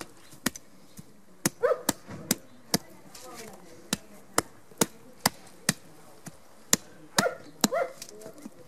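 Sharp knocks repeating evenly, about two a second, with short high yelps from a dog twice, a couple of seconds in and near the end.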